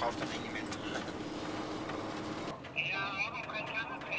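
Snowplough truck's engine droning steadily inside the cab, with a steady hum. About two and a half seconds in, the sound cuts off abruptly to a thinner, quieter one with faint, muffled voice-like sounds.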